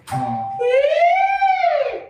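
A man singing a single high vocal glide in light head voice as a voice-training exercise, sliding smoothly up and then back down in one arch lasting just over a second.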